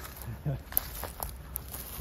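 Footsteps through grass and brush, with a few short crackles of twigs and vegetation.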